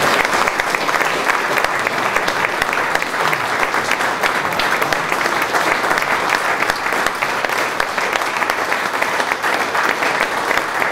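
Sustained audience applause, many hands clapping at a steady level.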